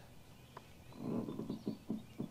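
The diaphragm pump of a Cobalt 40V Max battery-powered backpack sprayer clicking on. It is a faint, low, rough run of quick clicks starting about a second in.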